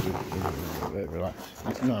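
A voice talking, with packing tape being picked at and pulled off a cardboard box underneath.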